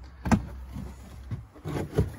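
A car's boot floor cover being lifted and moved aside to open the compartment beneath: a sharp knock about a third of a second in, then softer knocks and rubbing.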